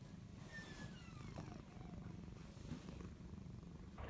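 A domestic cat purring, faint and steady.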